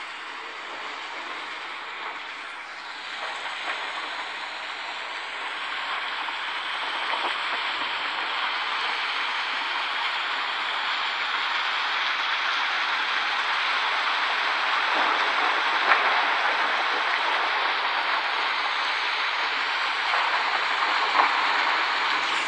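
Recorded thunderstorm ambience from a smart-light app, mostly steady rain hiss, played through a smartphone's small speaker and slowly growing louder.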